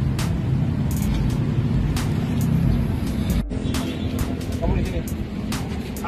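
Steady low rumble of motor vehicles, with a beat of short clicks from background music laid over it and faint voices about five seconds in.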